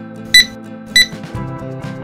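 Metal detector giving two short, high-pitched beeps about two-thirds of a second apart, the signal that it has found metal under the sand. Background music plays underneath.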